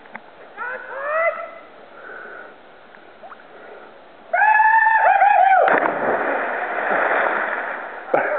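A brief whooping shout about a second in; then, about four seconds in, a long high scream, the Wilhelm scream, held for more than a second during a backflip off a cliff. It ends abruptly in a loud splash as the diver hits the river, followed by about two seconds of water noise.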